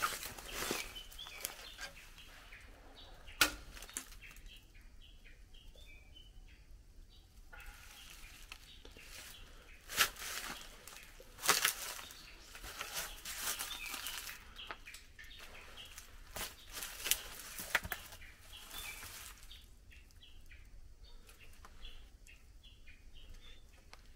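Footsteps crunching and rustling over dry leaves and debris, with scattered sharp crackles. A bird chirps in short repeated notes in the background, in two spells.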